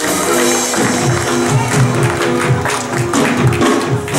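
Church musicians playing gospel music: sustained chords over a rhythmic bass line, with percussion hits.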